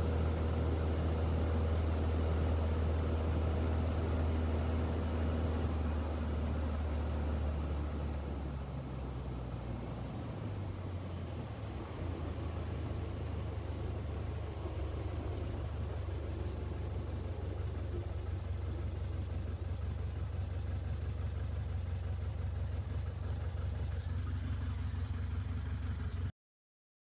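Kitfox light aircraft's engine and propeller heard from inside the cockpit: a steady low drone that drops in pitch and level around eight to ten seconds in, then settles into a lower, steady drone as the plane rolls out after a braking test stop.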